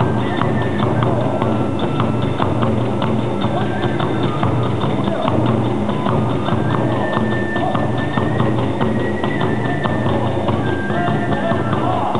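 Hiroshima kagura hayashi accompanying a fast dance: drum and small hand-cymbal strikes in a rapid, driving rhythm, with a high bamboo flute line held over them at times.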